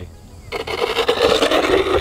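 Landing-gear wheels of a small RC foam jet touching down on rough, cracked asphalt and rolling fast: a loud, even rolling noise that starts suddenly about half a second in.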